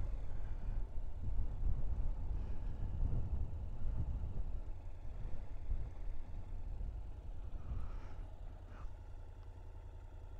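Honda NC750X motorcycle's parallel-twin engine running at low speed, heard as a steady low rumble that eases off near the end as the bike slows to a stop.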